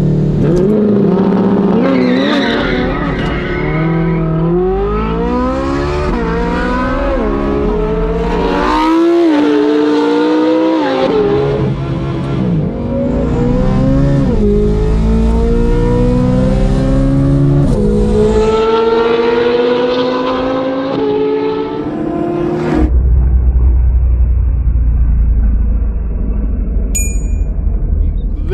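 2023 Chevrolet Corvette Z06's flat-plane-crank V8, heard inside the cabin, accelerating flat out through the gears. The pitch climbs and drops at each of seven or eight quick upshifts, then settles into a steadier low rumble about 23 seconds in.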